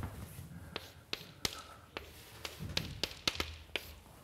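Chalk tapping and knocking on a blackboard while a word is written: about ten sharp, irregular clicks over three seconds.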